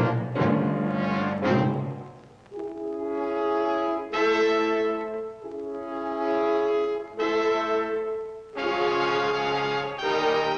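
Orchestral closing theme music led by brass: a few short, sharp accented chords, then long held brass chords that change every second or so.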